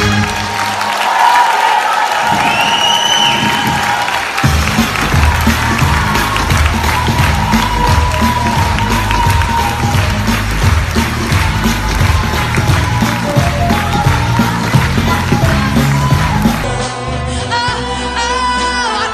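Theatre audience applauding and cheering, with a shrill whistle about two seconds in and music playing under the applause from about four seconds. Near the end the sound cuts to a woman singing with a band.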